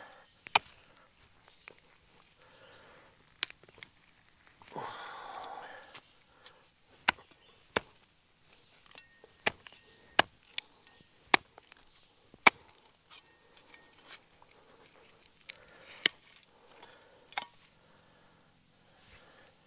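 Steel blade of a Cold Steel Special Forces shovel chopping into soil and a large root, a dozen or so sharp strikes at irregular intervals.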